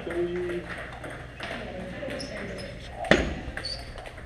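Table-tennis balls clicking against paddles and tables, several tables at once, in a large echoing hall with voices in the background. One sharp, much louder knock about three seconds in.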